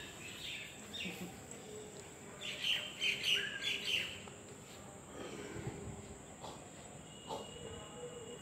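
Birds chirping, a quick cluster of short high calls a few seconds in, over a steady high-pitched insect hum.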